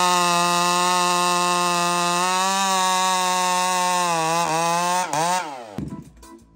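Husqvarna two-stroke chainsaw with a 'Screamin' Ram Horn' muffler held at wide-open throttle, a steady high-pitched engine note. About five seconds in the throttle is released and the pitch falls quickly as the saw drops back, fading just before the end.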